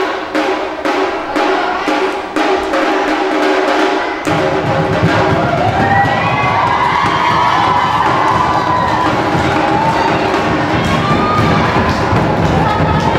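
Minangkabau traditional percussion music: sharp strikes in a steady beat, about two to three a second, over held middle tones. About four seconds in, deep barrel drums join in a dense roll and a wavering high melody line rises over them.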